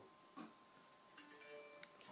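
Near silence, with a faint steady tone and a few faint short electronic tones in the second half.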